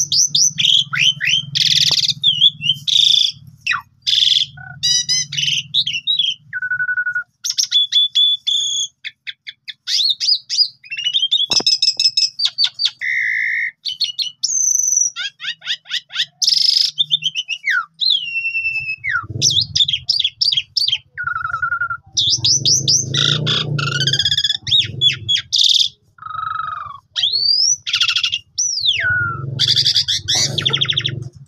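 Javan pied starling (jalak suren) singing a long, varied song: phrase after phrase of clear whistles, rising and falling notes, chatters and quick rattles, with only short gaps between them.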